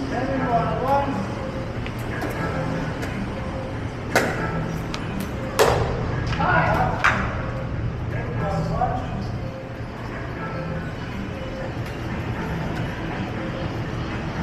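Pickleball paddles striking a plastic ball: three sharp pops about a second and a half apart in the middle, the second the loudest, over background voices and a steady hum of indoor music.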